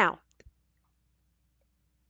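A single spoken word, then two faint, short clicks close together about half a second in, followed by near silence.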